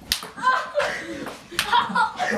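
Two sharp smacks of thrown ping pong balls striking, one just after the start and one about one and a half seconds in, with voices between them.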